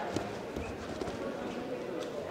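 Judoka's footfalls and bodies knocking on tatami mats as two fighters grapple and go down to the mat, with voices murmuring in the background.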